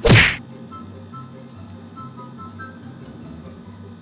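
A sudden hit right at the start that falls in pitch within about a third of a second, followed by soft background music with a light melody over a repeating bass pulse.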